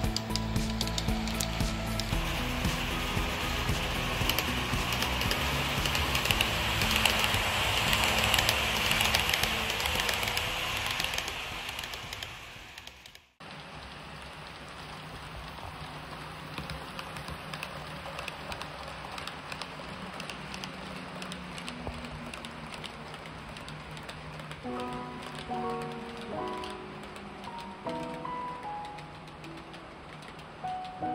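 Background music over the rushing, rain-like rolling noise of an HO-scale model freight train's wheels on the track, passing close by; the rolling noise swells, fades and cuts off about 13 seconds in. After the cut, quieter music carries on, with a melody picking up near the end.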